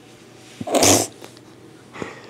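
A man sneezes once, loudly, a little over half a second in.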